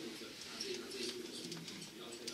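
A man's voice speaking, heard muffled and echoing as it plays through room loudspeakers.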